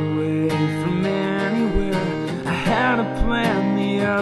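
Acoustic guitar strummed in a steady rhythm, with a man singing a drawn-out, bending vocal line in the second half.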